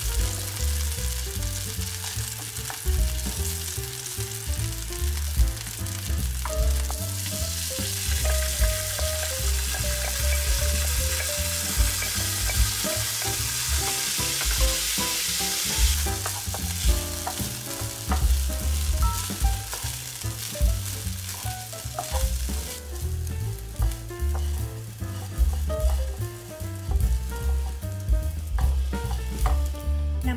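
Garlic, ginger and coriander root sizzling in hot chicken fat in a frying pan, stirred with a wooden spoon. Raw rice is tipped in and stirred through about halfway. The sizzle is strongest in the middle and dies away about three quarters of the way through.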